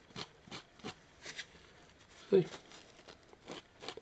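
A sponge scourer scrubs across the wet painted turret of a 1/16 RC tank model in short scratchy strokes, about two or three a second. It is working the water-soaked top coat so that it peels away in hairspray chipping.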